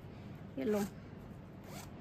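Zipper on a woven cotton cushion cover being pulled, a quick rasp near the end.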